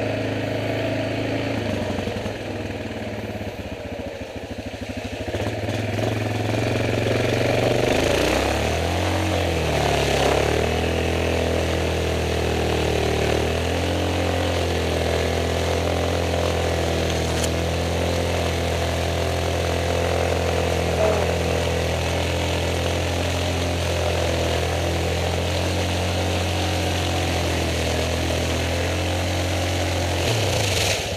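Yamaha Grizzly 450 ATV's single-cylinder engine running on a trail. Its pitch climbs about a quarter of the way in, then holds steady at higher revs with small rises and falls.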